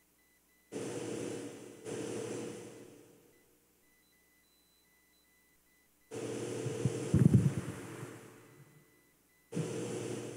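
Cloth rustling and handling sounds in four bursts that start suddenly and fade. The third burst, about six seconds in, is the longest and has a few sharp knocks about seven seconds in.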